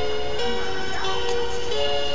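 A baby's musical crib mobile playing a simple electronic tune, plain steady notes sounding two at a time and changing about every half second.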